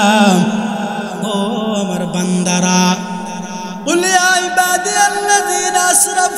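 A man's voice chanting a Bengali sermon in a long, drawn-out melodic tune, the Kuakata-style sung delivery of a waz, with notes held and bent rather than spoken. A louder new phrase begins about four seconds in.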